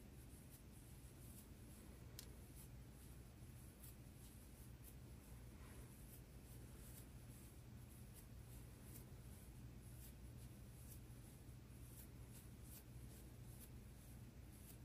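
Near silence: low room hum with faint, irregular light ticks and rustles from a large crochet hook and yarn as a foundation chain is worked.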